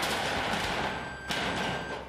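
A string of firecrackers crackling continuously, with a few louder bangs, thinning out near the end.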